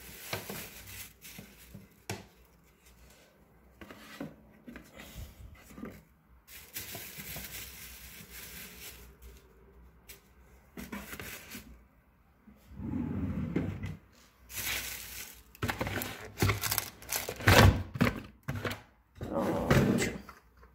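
Plastic bag rustling and things being moved and set down in drawers, with a run of louder clattering knocks in the last few seconds.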